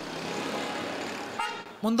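Street traffic noise, with a short, high car-horn toot about one and a half seconds in.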